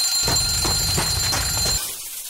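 Alarm clock ringing, a steady high ring that stops shortly before the end.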